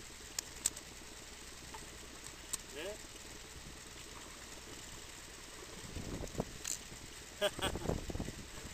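Steady low rumble of open-air ambience on a small inflatable boat at sea, with a few light clicks early, a brief vocal sound about three seconds in, and low thuds near the end.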